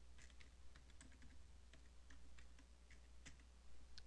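Faint keystrokes on a computer keyboard: about a dozen irregular taps as a short name is typed, over a low steady hum.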